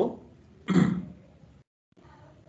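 A man clears his throat once, briefly, about a second in, just after the end of a spoken word.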